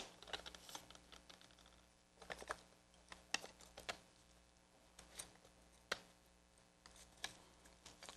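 Faint, scattered clicks and taps of lead came and small hand tools on a glass panel, as a strip of lead is measured, marked and cut to length.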